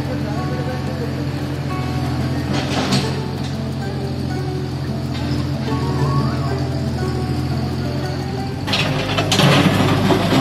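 A JCB mini excavator's diesel engine running steadily, mixed with music and voices; the sound gets louder and rougher with clatter near the end as the machine works close by.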